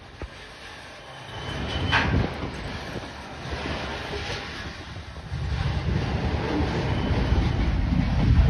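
Freight train cars rolling past on the rails, with a brief louder burst of wheel noise about two seconds in. Wind buffets the microphone from about halfway on.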